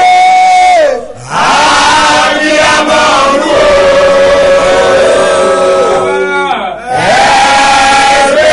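Loud sung worship chant: a man and a woman singing long held notes together. The voices slide down and back up between phrases, about a second in and again near the end.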